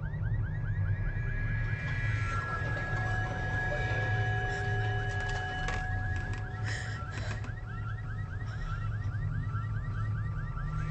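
Film soundtrack: a fast-repeating high electronic chirp, several a second, over a steady low rumble. Held tones swell in around the middle while the chirps fade out, and the chirps come back near the end.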